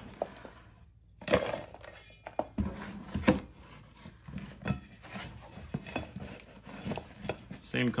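A metal scoop scraping and knocking in a cardboard box of crumbled fertilizer spikes. There are irregular clinks and scrapes as it digs through the powder and clumps and tips them into a plastic tub.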